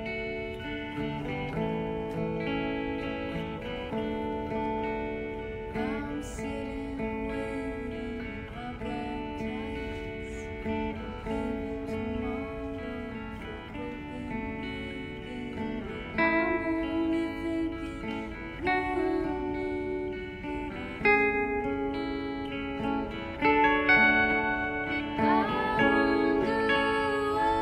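Two electric guitars played through small amplifiers in a slow band song, the notes changing chord by chord. In the second half a woman's singing voice joins and the playing grows louder.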